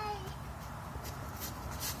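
A brief high-pitched falling call at the very start, then low steady background noise with faint handling rustles as the phone is moved.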